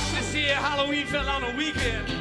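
Live rock band playing a country-blues song: acoustic guitar, bass and drums under a high lead line that wavers and bends in pitch.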